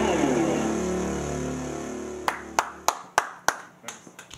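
A rock band's final chord of electric guitar and keyboard ringing out and fading away, followed by about six sharp hand claps, roughly three a second.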